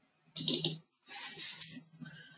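Computer keyboard typing in two short spells, the first starting about a third of a second in.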